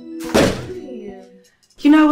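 A door shutting with a single loud thud about a third of a second in, over soft piano background music.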